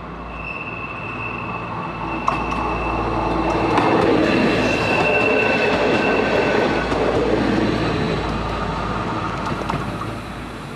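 A FAL ATR 220 diesel multiple unit passes close by on a curve. Its engine and wheels build to the loudest point about four seconds in, then fade as it draws away. A steady high-pitched squeal of wheel flanges on the curved rail runs through most of the pass, with a few sharp clicks from the rails.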